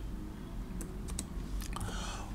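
Typing on a computer keyboard: a few light, scattered keystrokes over a faint low hum.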